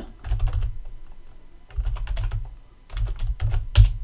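Computer keyboard typing: three runs of quick keystrokes with short pauses between them, and a louder keystroke near the end.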